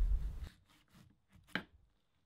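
Kitchen knife slicing through a pomegranate's rind on a wooden cutting board, with one short knock of the blade reaching the board about one and a half seconds in.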